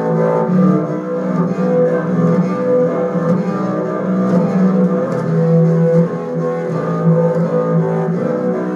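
Double bass played solo with the bow, long sustained notes ringing with overtones.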